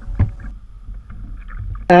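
Low wind rumble on the camera microphone over open water, with one short knock just after the start.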